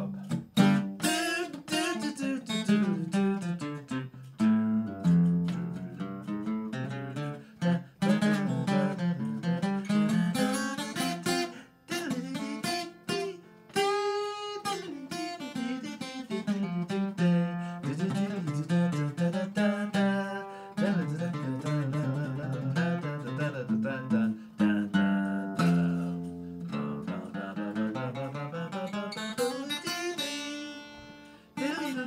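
Solo acoustic guitar playing an instrumental passage of picked notes and chords. One chord is left ringing about fourteen seconds in.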